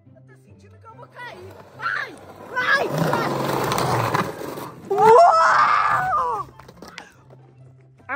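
A loud rolling, scraping rush of noise, lasting over a second about three seconds in, from a ride-on toy's wheels going down a concrete skate ramp. It is followed about five seconds in by a person's yell lasting over a second, all over background music.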